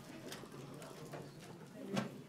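Faint, indistinct voices and room sound in a council chamber, with no distinct event.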